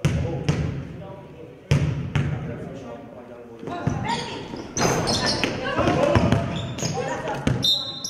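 A basketball bounced on a hardwood gym floor a few times, each bounce sharp and echoing around the hall, as a free-throw shooter readies his shot. From about halfway through, voices and short high squeaks fill the hall as players move for the rebound.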